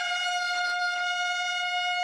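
A single long, high brass note held steady at one pitch, as a trumpet or horn call in the background music.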